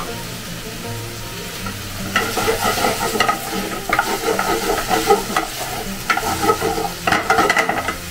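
Chopped vegetables sizzling in a nonstick frying pan on a gas flame, while a wooden spatula stirs and scrapes against the pan. The stirring strokes come irregularly from about two seconds in.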